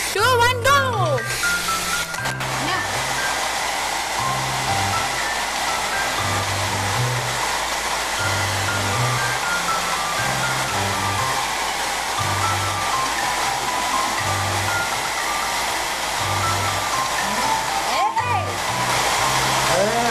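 Handheld electric hair dryer running steadily with its nozzle pointed upward, its airstream keeping a light ball hovering. It plays over background music with a repeating bass line and a simple melody.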